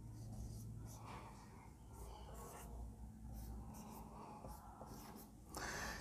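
Faint squeaks and scratches of a marker pen writing numbers on a whiteboard, in short, irregular strokes.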